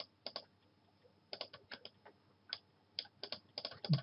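Computer mouse button clicking, a string of short sharp clicks at uneven intervals, some in quick pairs, as spline vertices are placed one after another in 3ds Max.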